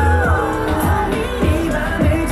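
K-pop dance song playing loud over a concert PA, with sung vocals gliding over a steady heavy kick-drum beat.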